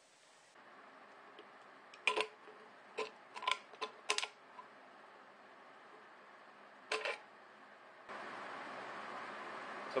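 Tin snips cutting a ribbed steel food can: a handful of short, sharp metallic snips in quick succession, then one more a few seconds later.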